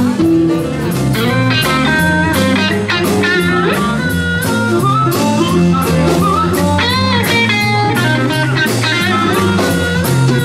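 Electric blues band playing an instrumental break: a lead electric guitar with bent notes over bass guitar and a drum kit.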